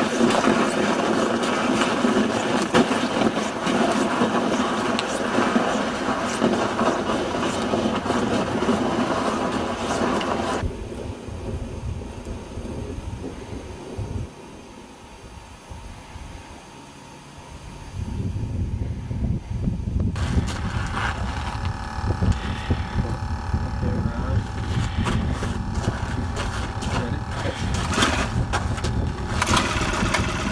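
A StrikeMaster gas ice auger's two-stroke engine starts about two-thirds of the way in and runs steadily. The first third holds a different loud, dense sound with several steady pitches, which then cuts out to a quieter stretch.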